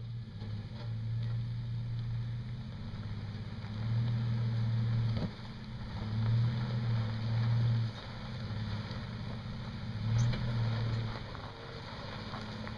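Toyota FJ Cruiser's 4.0-litre V6 engine running at low revs as the truck crawls over a rocky dirt trail, its note swelling and easing off several times with the throttle.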